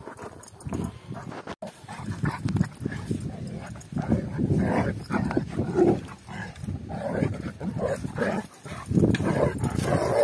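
Two dogs, a Kangal and a black dog, growling as they wrestle, in rough, uneven surges that begin about two seconds in and grow louder toward the end.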